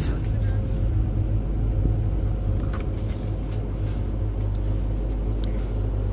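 Steady low hum of supermarket refrigerated display cases, with a few faint clicks from handling.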